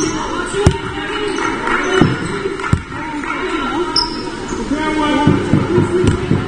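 Basketball bouncing on a sports hall floor: a few single bounces, then a quick run of bounces near the end as a player dribbles at the free-throw line before a shot. Indistinct voices of players and spectators underneath.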